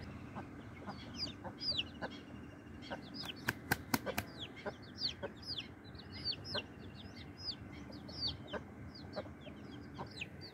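Chicks peeping over and over in short, high, downward-sliding cheeps while foraging. A few sharp clicks come a little over three seconds in.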